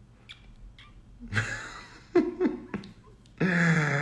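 A man's soft, breathy laughter: a breathy exhale followed by a few short chuckles, then his voice starting near the end.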